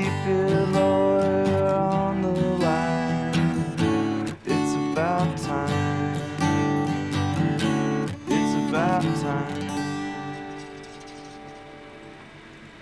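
Solo acoustic guitar strummed, chords ringing with a few sliding notes between them; the playing dies away near the end.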